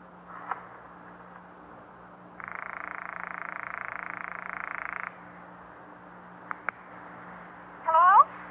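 A telephone rings once, a buzzy ring of under three seconds starting about two and a half seconds in. A couple of sharp clicks follow about a second and a half later as the line is picked up. A faint click comes about half a second in, and a low steady hum runs underneath.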